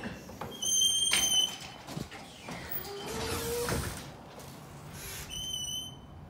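A glass exit door's electronic chime beeps twice, a high steady tone near the start and a shorter one near the end, as the door is opened. A short rising squeak sounds between the two beeps.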